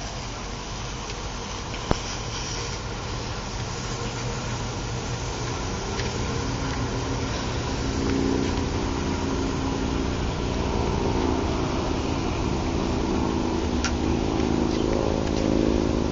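A motor vehicle's engine running, a steady low hum that grows louder through the second half. There is a single sharp click about two seconds in.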